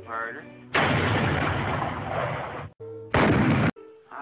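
Cartoon cannon sound effect: a sudden blast about a second in that dies away over about two seconds, then a second, shorter blast near the end that cuts off abruptly.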